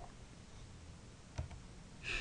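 A single click of a computer key or mouse button, about one and a half seconds in, as the presentation slide is advanced, over faint room tone.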